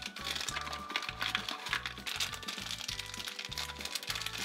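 Crinkling and rustling of a plastic foil wrapper being handled and picked open, over background music with a steady beat.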